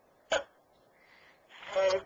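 A single short, sharp vocal burst about a third of a second in, then a man's voice speaking near the end.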